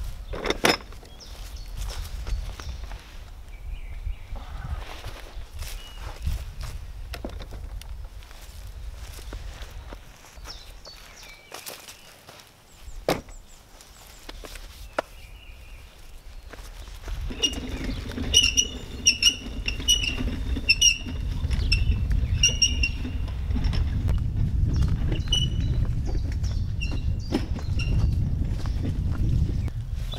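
Heavy logs knocking into a plastic wheelbarrow tub in a few single thuds, then the loaded two-wheeled wheelbarrow pushed over grass with footsteps, its wheels rumbling steadily from a little past halfway.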